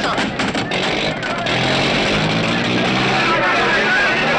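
Old film soundtrack: music under the shouting of a crowd, with a car engine running. The first second and a half carries crackling clicks before the sound settles into a steady mix.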